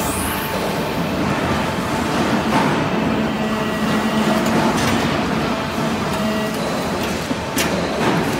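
Vertical hydraulic metal-chip briquetting press running, with the steady hum of its hydraulic pump unit. A lower tone comes in for a couple of seconds in the middle, and there is a sharp click near the end.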